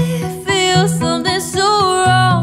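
A woman singing a pop melody, gliding between notes, over a strummed acoustic guitar keeping a steady rhythm.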